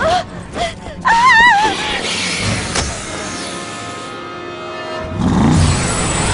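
Cartoon soundtrack: background music with short gliding vocal sounds and a wavering cry in the first second and a half. A vehicle engine sound rises and grows louder from about five seconds in as the van comes to life.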